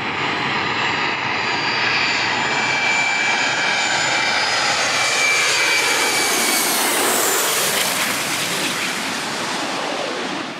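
Boeing 737's turbofan engines on a low landing approach, a loud jet whine with rushing noise that builds as the airliner comes in and passes overhead about six seconds in. As it goes by, the whine drops in pitch and the sound begins to fade.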